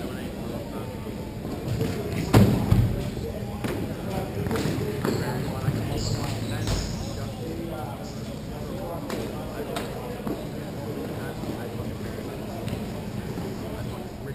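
Hockey play: sharp clacks of sticks and shots, the loudest about two seconds in, over the distant shouting of players.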